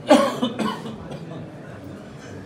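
A person coughing twice in quick succession, close and loud.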